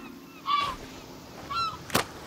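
Seagull giving two short honking calls about a second apart, followed by a sharp smack just before the end.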